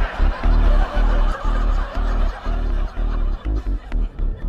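Studio audience laughter fading out as the sitcom's closing theme music cuts in with a driving, pounding beat about twice a second.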